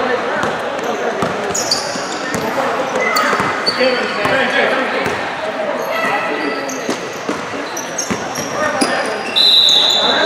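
Basketball game in an echoing indoor gym: the ball bouncing and sneakers squeaking on the court throughout, with players calling out. A shrill whistle blast sounds just before the end.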